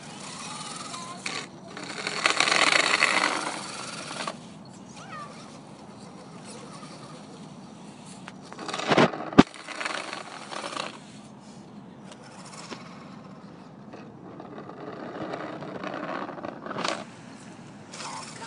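A Trailfinder 2 scale RC truck's motor and drivetrain running as its plow pushes along, a rough scraping rush that swells loudest about two to four seconds in and again near the end, with one sharp knock about nine seconds in.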